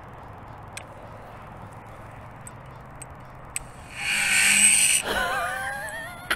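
DJI FPV drone powering up: a few faint ticks, then a loud whirring burst about four seconds in that lasts about a second, followed by wavering tones near the end.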